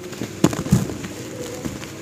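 Dry, dusty cement slab chunk crumbling in the hands, with sharp cracks as pieces break off, the two loudest about half a second in, and gritty crumbs falling into the cement powder in the tub.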